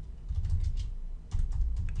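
Typing on a computer keyboard: a quick, irregular run of keystrokes that begins a moment in.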